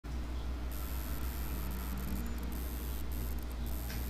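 Steady low electrical hum with constant hiss from an open microphone input, with no one speaking. A brief tick comes near the end.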